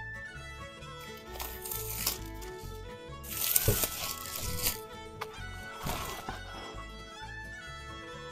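Background music with bowed strings throughout, over which clear plastic shrink-wrap crinkles and tears in three bursts as it is peeled off a stretched canvas; the loudest burst comes about halfway through.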